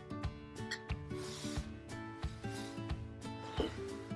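Soft background music with held notes and a light, steady beat. About a second in comes a brief rustle of cotton fabric being handled and smoothed by hand.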